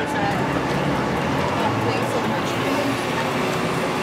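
Busy city street ambience: steady traffic noise with indistinct voices of passers-by talking.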